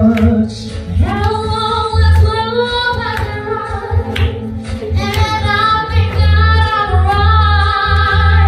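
A woman singing a musical-theatre song into a handheld microphone, amplified, over backing music with a steady low bass pulse; she holds long notes.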